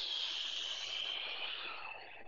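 Steady rush of air hissing out of KAATSU pneumatic arm bands as the handheld unit deflates them in the off phase of its cycle, sinking slightly in pitch.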